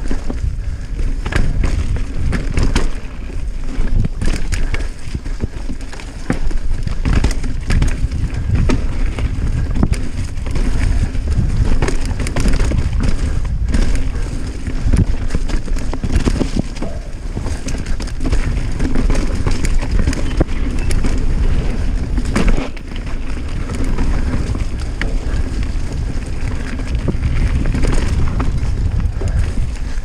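Norco Range 29 mountain bike riding down a dirt and leaf-litter singletrack: a steady low rumble of tyres and wind on the camera microphone, broken by frequent short rattles and knocks of the chain and frame over bumps and roots.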